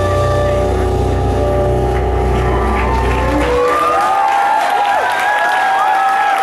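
A live band holds its closing chord, which cuts off about three and a half seconds in. The audience then breaks into cheers and whoops as applause begins.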